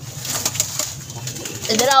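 Domestic pigeons cooing in a small loft, with rustling, scraping and clicks as a hand handles a plastic nest crate with straw in it. A voice comes in near the end.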